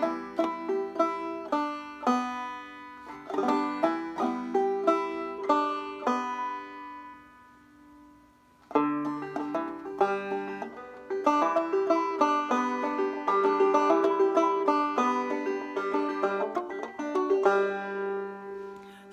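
Open-back banjo played clawhammer (frailing) style: an instrumental break of plucked notes and strums with hammer-ons, moving through G, E minor and D back to G. The notes ring out and fade about seven seconds in, and the playing starts again, fuller and denser, near nine seconds in.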